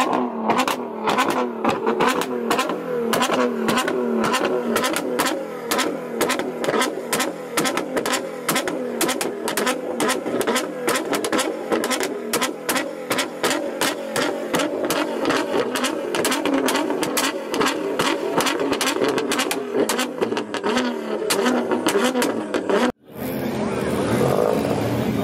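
Nissan GT-R's twin-turbo V6 held on a two-step launch limiter: the engine sits at a steady high rev with a rapid, continuous machine-gun popping and banging from the exhaust as unburnt fuel ignites, shooting flames. It cuts off abruptly near the end.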